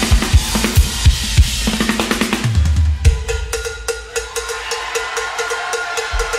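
Live rock drum kit with bass guitar: a steady kick-drum beat under a low bass note for about the first half, then the low end drops out. Only fast, even cymbal strokes with a repeated mid-pitched hit carry on until near the end.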